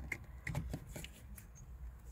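Faint clicks and rustling of plastic wiring-harness connectors and wires being handled, a few small separate ticks spread over the two seconds.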